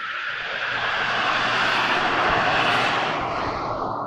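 A vehicle passing close by: a rush of noise that swells over about a second, holds, and fades away near the end.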